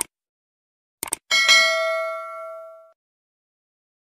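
Sound effect for a subscribe-button animation: two quick mouse clicks, then a notification bell ding that rings with several pitches and fades out over about a second and a half.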